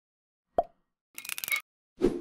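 Short logo sound effect: a sharp pop about half a second in, then a brief crackling hiss about a second in, and another pop-like hit as it ends.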